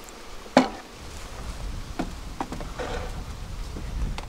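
Wooden beehive boxes knocking as a medium super is lifted off the stack and handled: one sharp knock about half a second in, then a few lighter knocks.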